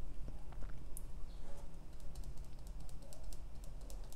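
Paintbrush working wet acrylic paint on a palette: many light, irregular taps and soft scrapes as the colours are mixed.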